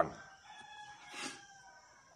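A faint, drawn-out bird call lasting about a second, in the background.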